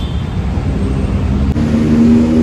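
Steady low rumble of outdoor traffic and vehicle noise, with a steady low hum setting in about a second and a half in.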